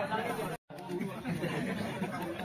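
Voices talking, with a brief gap of dead silence just over half a second in.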